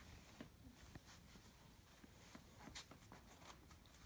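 Near silence, with a few faint soft ticks and rustles of paracord cord being handled and woven by hand.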